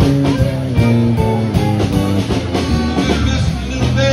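Live band playing an instrumental rock passage: electric guitar over a drum kit and keyboards, with regular drum hits.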